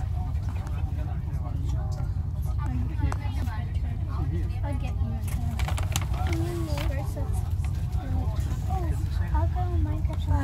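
Steady low rumble inside a train passenger car, with people talking indistinctly over it and a few small knocks.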